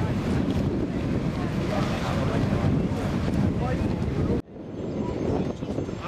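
Wind buffeting the camera microphone in a heavy low rumble, with crowd voices underneath. About four and a half seconds in it cuts off suddenly to a quieter outdoor murmur of voices.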